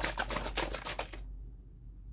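A bottle of acrylic pour paint mix being shaken hard: a fast, even run of rattling strokes that stops just over a second in.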